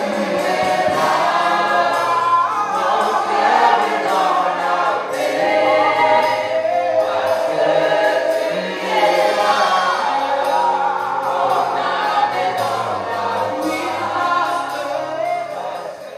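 Women singing gospel together into microphones, a choir-like sound, which fades away just at the end.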